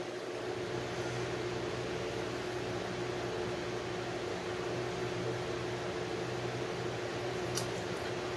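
Steady ventilation hum of a fan running, an even whir with a low steady tone underneath. A faint click comes near the end.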